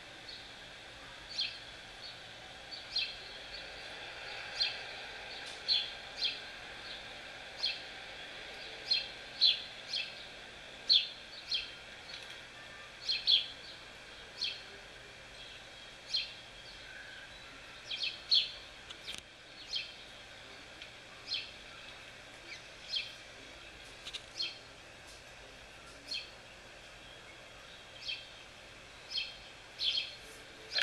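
A small songbird chirping repeatedly, short sharp chirps about once a second, over a steady faint outdoor hiss.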